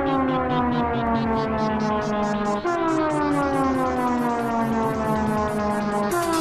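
Siren-like falling tone in an industrial techno mix. It slides down in pitch over about three and a half seconds and starts again high about two and a half seconds in, over a steady pulse of about four beats a second.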